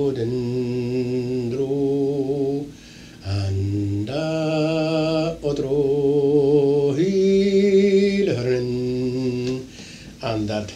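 A man singing a phrase of pipe music in canntaireachd, the vocable syllables used to teach piobaireachd. He holds slow, drawn-out notes of different pitches, each with a slight waver, with a short break about three seconds in.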